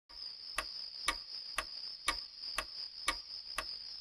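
Clock ticking evenly, about two ticks a second, over a steady high-pitched tone.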